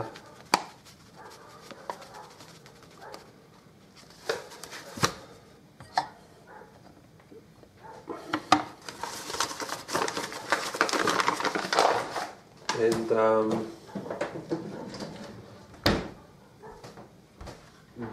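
Kitchen handling sounds: scattered sharp knocks and clinks of a glass measuring cup against a glass mixing bowl, and a few seconds of paper rustling from the flour bag from about nine to twelve seconds in.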